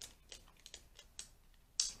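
Small clicks and crackles of a foil lid being peeled from a plastic dipping-sauce cup by hand, with one sharper, louder crackle near the end.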